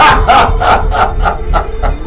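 A woman's long cackling laugh: a rapid run of 'ha's that begins loud and fades away over about two seconds, over a low, eerie music bed.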